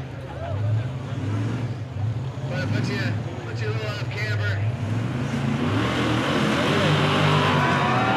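Rock bouncer buggy's engine revving in repeated throttle bursts as it climbs a rock ledge, with spectator voices over it. From about five seconds in the engine and crowd noise rise and stay loud, with whistles and cheers near the end.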